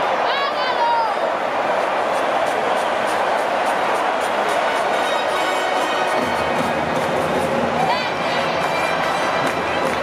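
Ballpark crowd chatter and din from a packed stadium, with a loud pitched call rising above it twice. Music comes in over the crowd about halfway through.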